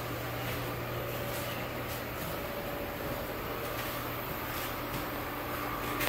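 Steady background hum with an even hiss, like a fan or other machine running in a workshop. There are no sudden sounds in it.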